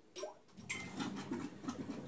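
Samsung WW9000 front-loading washing machine starting a Rinse+Spin cycle: a few clicks and a short beep, then a steady low hum sets in about half a second in and keeps running.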